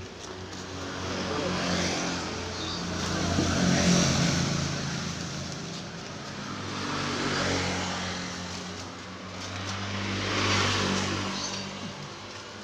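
Motor vehicles passing on a road: a rushing engine-and-tyre noise that swells and fades, loudest about four seconds in and again near the end, over a steady low engine hum.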